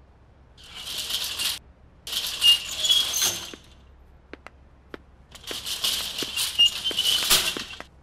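A barred metal gate and its keys and lock rattling and jangling as the gate is unlocked and opened, in three bursts, the last and longest near the end, with a few sharp clicks between them.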